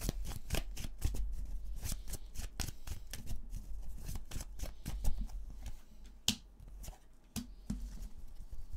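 A deck of Lenormand cards being shuffled by hand, overhand, in a quick, continuous run of card clicks and slaps. It thins out to a few sharp, separate clicks in the last two seconds as the shuffle slows.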